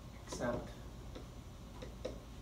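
Dry-erase marker writing on a whiteboard: a few small tapping clicks as the tip strikes the board. A short spoken syllable comes about half a second in.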